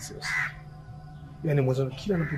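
A crow cawing: two short calls close together near the start.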